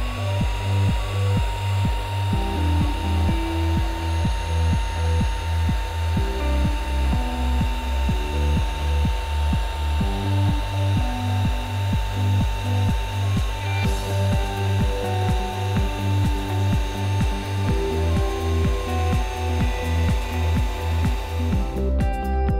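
Electric turbo air pump running steadily as it inflates an air sofa bed, under background music with a steady bass beat.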